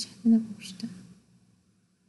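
A sharp click, then a brief, soft, half-whispered mumble of a voice that fades out after about a second.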